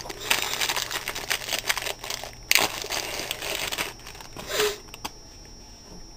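Plastic wrapping crinkling and rustling as it is handled and pulled off a phone charger, in uneven spells over the first four seconds with a sharper crackle about two and a half seconds in, then fading down.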